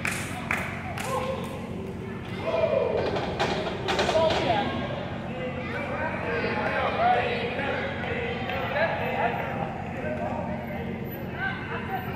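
Indistinct shouting and talking voices in a large gymnasium, with a few sharp knocks and thuds in the first few seconds.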